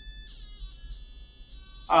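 Piezo buzzer driven by PWM from a PIC microcontroller, sounding a steady high tone with a buzzy edge. Its pitch is set by the joystick's ADC reading and shifts once, a fraction of a second in, then holds steady.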